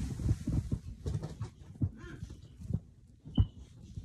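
Handling noise from the phone that is recording: rustling and irregular light knocks as it is moved and turned, with one sharper knock about three and a half seconds in.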